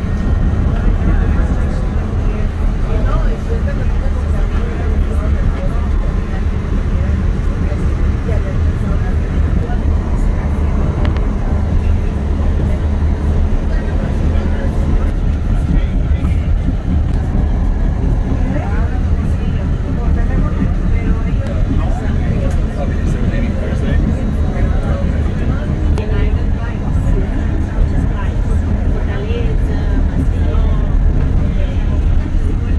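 Passenger train running, heard from inside the carriage: a steady low rumble, with indistinct voices of people talking throughout.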